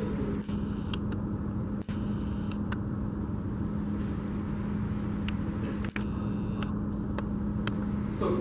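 A steady low hum over even room noise, with a few faint clicks scattered through. The sound briefly dips out three times: about half a second in, near two seconds and near six seconds.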